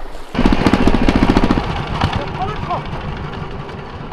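Small farm tractor engine hauling a cart loaded with bricks, running with a fast, even beat. It cuts in loudly a moment in and then gradually fades.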